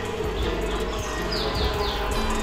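Background music with a bird chirping, three quick falling notes in a row about a second and a half in.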